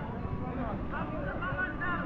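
Indistinct voices over a steady low rumble of background noise.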